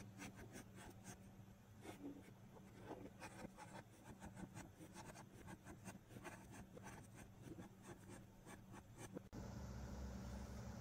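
Felt-tip marker writing on a paper label over a cardboard box: faint, quick scratchy strokes, several a second, which stop shortly before the end.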